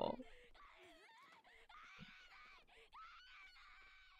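A young woman's voice wailing and crying out "I can't go home!" in Japanese, heard faintly from an anime episode played with its audio turned down low.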